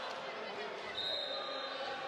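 Indoor roller hockey rink ambience during warm-up: crowd chatter echoing in the hall with knocks of hockey balls being struck and bouncing. A brief high steady tone sounds about a second in.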